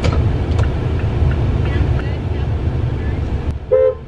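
Car turn-signal indicator ticking faintly and regularly over a steady low rumble, then a short car-horn beep near the end.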